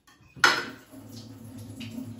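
Cutlery knocking against a ceramic dinner plate once, sharply, about half a second in, followed by faint clinks over a steady low hum.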